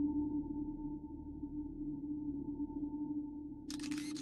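Background ambient music: a sustained low drone holding steady tones, with a brief hiss near the end.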